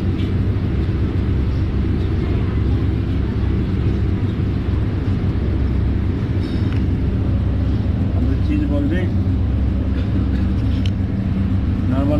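A steady low rumble of background noise that keeps an even level throughout, with faint voices about eight to nine seconds in.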